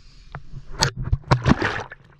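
Splashing and slapping of wet mud and shallow creek water as a mermaid-tail costume's fin thrashes. There are sharp splashes a little under a second in and again around a second and a half.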